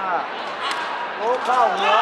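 Sepak takraw ball kicked during a rally on an indoor court: sharp knocks, about two, over voices and short calls echoing in the hall, which grow louder near the end.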